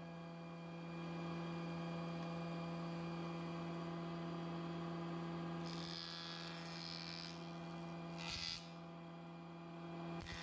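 Wood jointer running with a steady motor hum as its cutterhead spins. About six seconds in, and again briefly near eight and a half seconds, a short hissing cut is heard as a thin wood strip is pushed across the knives.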